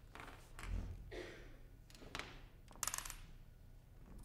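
Handling noises as a cellist settles onto a stage chair with the cello: a low thud about three-quarters of a second in, some shuffling, and a sharp rattle of clicks near three seconds in.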